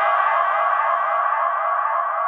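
Drum and bass track in a drumless breakdown: a sustained chord held steadily, with a low bass tone underneath that drops away a little past halfway.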